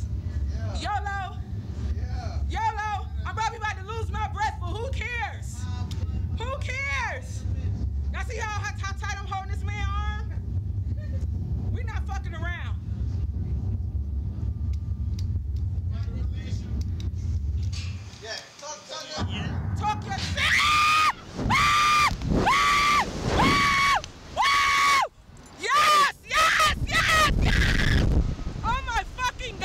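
Chatter over a steady low hum, then, after a short lull, a rider on a slingshot ride screaming as it launches: a string of about seven long, high screams, each held on one pitch.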